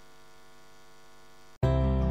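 Faint steady electrical hum from the sound system, broken by a brief dropout about one and a half seconds in, after which a much louder steady hum starts as the film's audio playback comes in.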